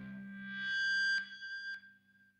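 Closing note of an electric guitar played through effects: a high note swells up over about a second, is cut off with a click, and after a second click fades out.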